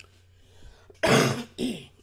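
A person coughing: one loud cough about a second in, then a shorter second one.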